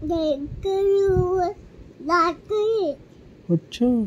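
A toddler girl singing in a few short, wordless phrases, one note held steadily for almost a second about a second in.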